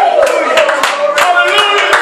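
Church congregation clapping their hands repeatedly over loud, overlapping voices.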